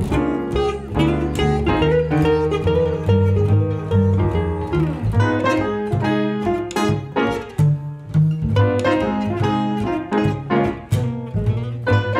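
Jazz trio playing an instrumental passage: plucked upright bass, guitar and grand piano, in a swinging run of quick notes.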